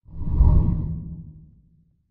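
Whoosh sound effect for a logo transition, deep in the low end. It swells up quickly, peaks about half a second in, then fades away over the next second.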